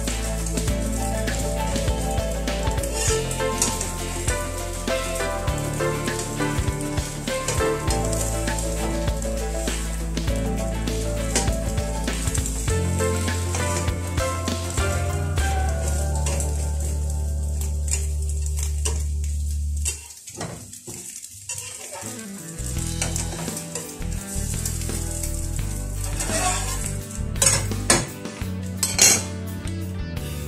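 Food sizzling as it fries in a pan, stirred and scraped with a metal spatula that clinks against the pan again and again.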